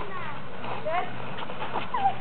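Children's voices calling out in short, scattered shouts across an open play area, over a low steady hum.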